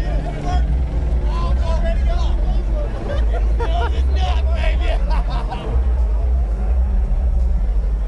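A crowd of people talking and calling out over one another, over a steady deep rumble.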